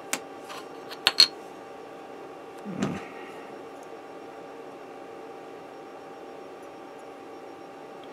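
A few sharp plastic clicks in the first second and a half, the loudest about a second in, as a polycap is worked free of its plastic runner, followed by a steady low hum.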